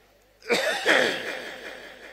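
A man coughing, two rough bursts in quick succession about half a second in, picked up by a microphone and trailing off over the next second.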